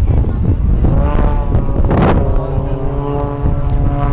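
Engine drone of an aerobatic display aircraft flying overhead, rising in pitch and then holding a steady note from about halfway, under heavy wind buffeting on the microphone.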